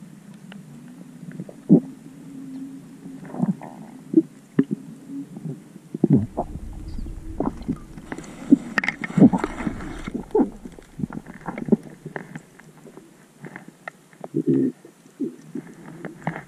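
Muffled underwater sound picked up by a camera during a freedive: irregular knocks and clicks with a gurgling undertone, and a low rumble from about six to ten seconds in.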